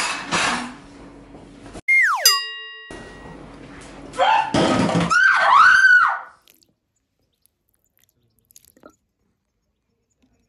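A cartoon sound effect about two seconds in, a tone that slides quickly down in pitch. About four seconds in, a woman lets out high, wavering shrieks that last about two seconds.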